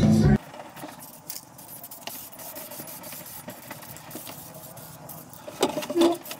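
Music with singing stops abruptly; then faint scratching and light clicks of a craft-knife blade drawn along the painted metal fuel tank, with a few louder knocks near the end.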